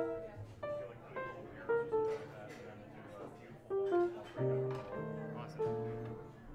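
Grand piano played loosely: scattered single notes and short chords, each struck and left to fade, with pauses between, and heavier low notes near the end.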